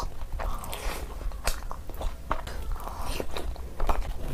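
Close-miked wet mouth sounds of biting and chewing a curry-coated, bone-in piece of mutton eaten by hand: an irregular run of short smacks and clicks over a steady low hum.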